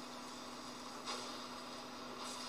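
Faint steady hiss with a low, constant hum, the hiss growing louder about a second in.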